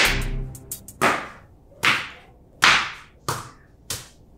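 A long-handled floor broom slapped hard against a tiled floor, about six sharp smacks roughly every three-quarters of a second, each ringing briefly in the tiled room.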